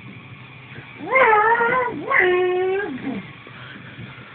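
Two drawn-out, high-pitched vocal calls, each just under a second long. The second holds one steady pitch before falling away at its end.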